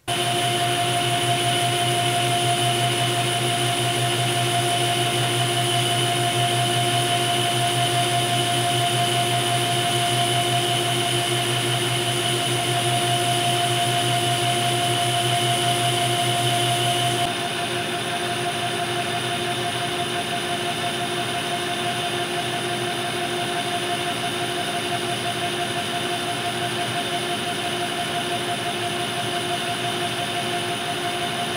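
Metal lathe running steadily while turning a ductile iron workpiece, with a steady mechanical whine of several tones. About 17 seconds in, the sound changes abruptly to a slightly quieter running note.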